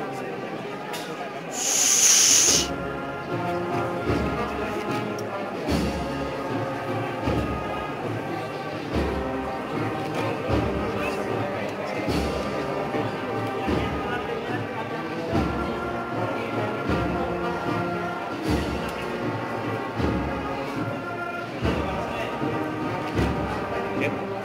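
Holy Week processional band playing a slow march: held brass notes over a bass drum beat about every second and a half. A short loud hiss cuts across about two seconds in, and crowd voices murmur underneath.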